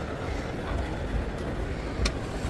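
Steady low rumble of a moving walkway carrying a loaded luggage trolley, over the even hum of a large airport hall.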